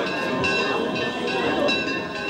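Church bells ringing, struck several times in quick succession so that the tones overlap and keep sounding, with voices singing underneath.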